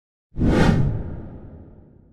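Whoosh sound effect with a deep rumble under it. It starts suddenly about a third of a second in and fades away over about a second and a half, as a logo-reveal swoosh.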